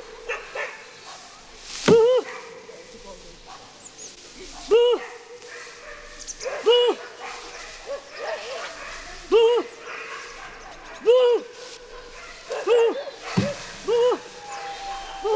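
Short pitched calls, each rising and falling in pitch, repeated about every one to two seconds, roughly nine in all.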